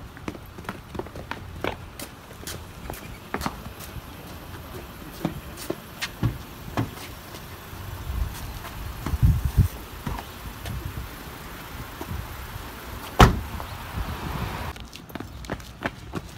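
Footsteps on porch steps and pavement, a few dull low thumps, then one loud slam as a car door is shut, about three seconds before the end.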